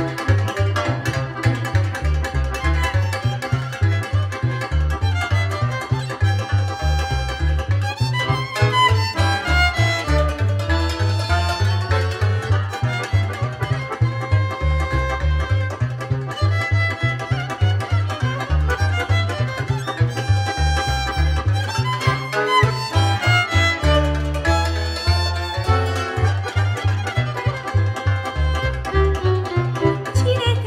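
Romanian lăutar taraf playing an instrumental passage: violin carrying the melody over accordion and țambal (cimbalom), with double bass keeping a steady low beat.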